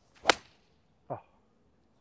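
A TaylorMade P790 UDI driving iron striking a golf ball off the fairway turf: one sharp crack about a third of a second in.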